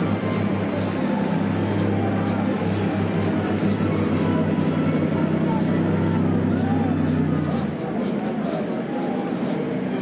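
Diesel engines of a column of wheeled armoured military vehicles driving past, a steady deep drone that eases off near the end, with voices over it.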